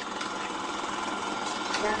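Film projector running steadily.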